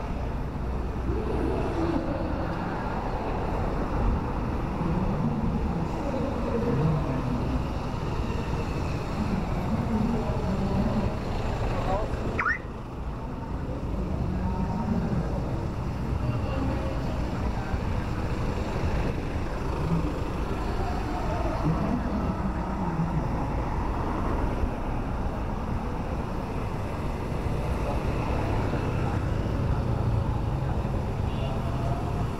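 Steady city street traffic: cars, pickups and motorbikes passing, with voices mixed in. About twelve seconds in there is a short rising squeal.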